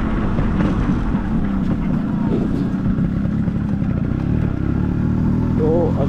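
Yamaha RX100's two-stroke single-cylinder engine running steadily as the motorcycle is ridden along.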